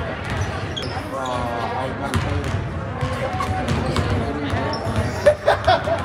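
Several basketballs bouncing on a hardwood gym floor in irregular thuds, under the chatter of voices in the gym, with a couple of louder voices near the end.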